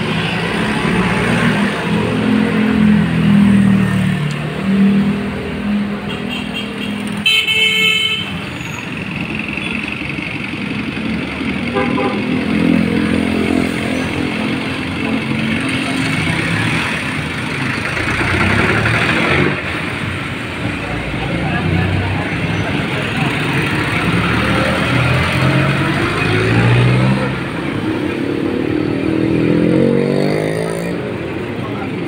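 Street traffic of jeepneys, vans and motorcycles with engines running steadily, a short horn toot about seven seconds in, and an engine rising in pitch near the end as a vehicle pulls away.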